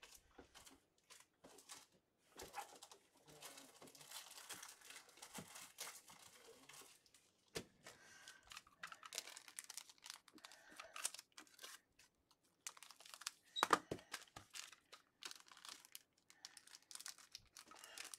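Faint, irregular crinkling of plastic card sleeves and packaging being handled, with soft clicks and a louder cluster of them about two-thirds of the way through.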